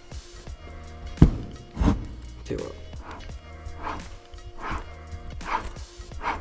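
Background music, with a few short knocks and rough turning sounds from a worn front wheel hub bearing being rotated by hand. The bearing has noticeable resistance and is worn out.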